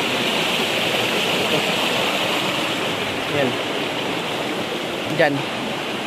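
Fast-flowing creek rushing steadily over rocks, its current strong.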